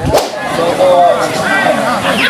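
People's voices talking, with a sharp click a fraction of a second in where the background sound changes abruptly.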